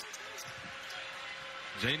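A basketball dribbled on a hardwood court, a few faint bounces over a steady arena crowd murmur.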